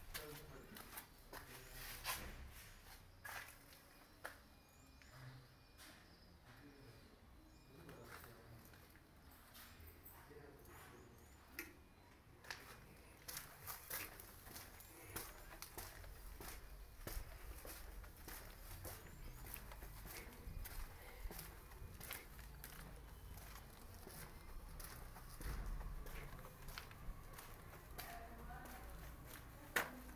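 Quiet outdoor ambience with irregular footsteps and handling clicks from a hand-held camera being carried along walls, over a low steady rumble.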